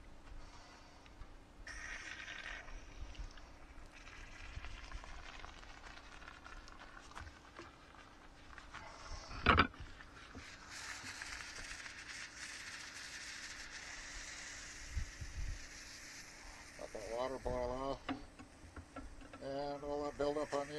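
Water sizzling in the hot pan and tube of an oxalic acid vaporizer wand as it boils off the buildup inside. A sharp knock comes about halfway through, then a steady hiss follows for about six seconds and fades.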